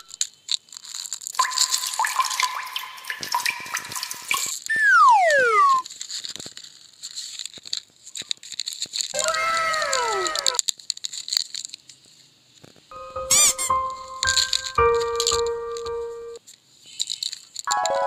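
Cartoon-style sound effects: a run of quick rattling clicks about two seconds in, then whistle-like falling glides around five and ten seconds in, bell-like chiming tones after that, and a spreading sweep of tones near the end.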